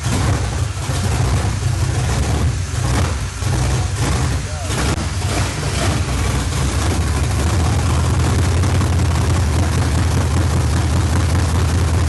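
Mopar 440 big-block V8 of a 1968 Dodge Charger on its first start, running loud and lopey on bare headers with no exhaust fitted. Heavy induction noise comes from the uncapped Edelbrock EFI throttle body, which has no air filter on it.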